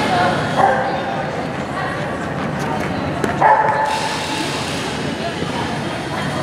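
A dog barking twice during an agility run, over the steady background noise of a large indoor arena.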